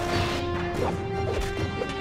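Glass smashing as a body crashes through a glass pane, over dramatic music holding a sustained chord that steps up in pitch about a second in.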